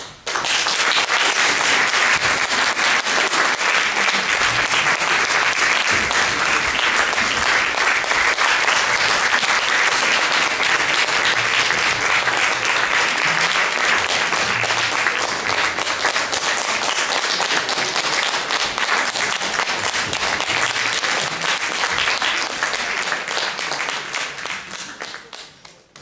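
Concert audience applauding: the applause breaks out suddenly, holds steady and dense, and fades out at the very end.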